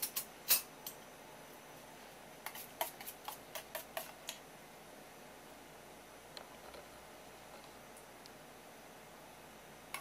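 Metal spoon clinking against a stainless steel bowl while scooping miso sauce: a few sharp clinks at the start, then a quick run of about ten light taps a few seconds in.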